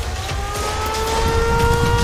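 A machine's whine that rises in pitch from about half a second in and then holds steady, over a pulsing low rumble.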